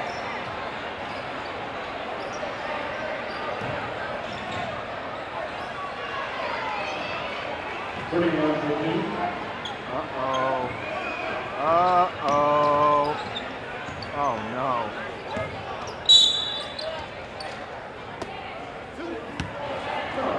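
Basketball game in a gym: a ball dribbled on a hardwood court over crowd noise, with voices shouting from the stands for several seconds in the middle. A short shrill referee's whistle about 16 seconds in is the loudest sound.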